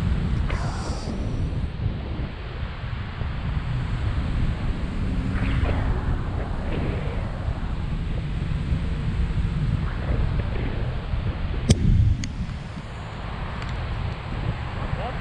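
Wind buffeting the microphone of a pole-mounted action camera in tandem paraglider flight: a steady, loud low rumble. Near the end a single sharp knock cuts through.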